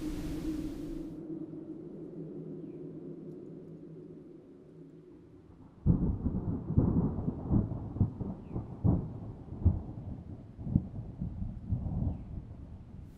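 Thunder sound effect: a low hum fades away over the first few seconds, then a loud rumble of thunder breaks in suddenly about six seconds in and rolls on in irregular surges.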